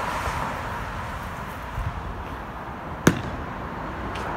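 Steady outdoor background noise, with one sharp knock about three seconds in.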